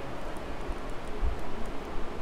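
Handling noise from a plastic action figure being turned and posed in the hands: faint small clicks and a couple of soft bumps over a steady background hiss.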